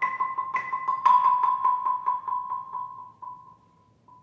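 Concert marimba played with mallets: a single high note struck over and over, about four times a second, with a stronger stroke about a second in. The strokes then grow softer and further apart and die away about three and a half seconds in, leaving one faint last tap.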